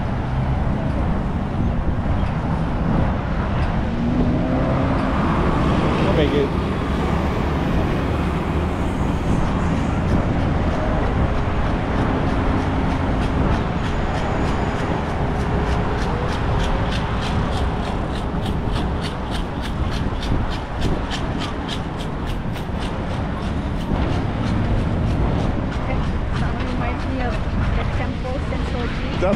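Steady street traffic at a busy signalized intersection. From about halfway in, an accessible pedestrian crossing signal ticks rapidly and evenly, giving the walk indication.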